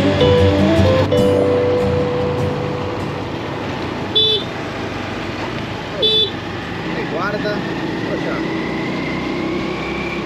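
Background music dies away in the first couple of seconds. Road traffic noise follows, with two short vehicle horn toots about two seconds apart, near the middle.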